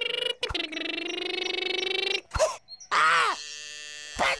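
A cartoon chick character's wordless voice: a long strained groan held at a steady pitch for about two seconds, then a couple of short grunting calls.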